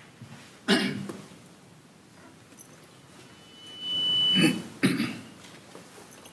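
A person coughing sharply about a second in, and coughing or clearing their throat again twice near the end. Just before the later coughs, a steady high tone sounds for about a second.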